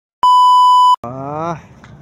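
Steady test-tone beep, the kind played with TV colour bars, sounding for under a second and cutting off sharply; a voice follows briefly, falling in pitch.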